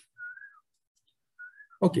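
Two short, soft whistled notes at the same pitch, each bending slightly up and then down, about a second apart, with a spoken word near the end.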